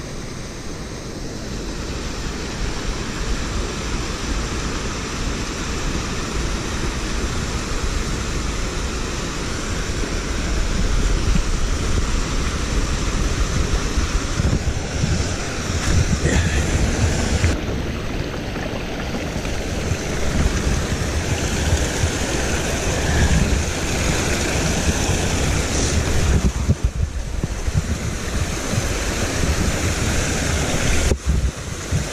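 Small mountain creek running over boulders and little cascades, a steady rush of water, with wind buffeting the microphone.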